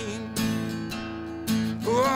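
Acoustic guitar strummed, its chords ringing on between sung lines, with a couple of fresh strums. A sung note rises in near the end.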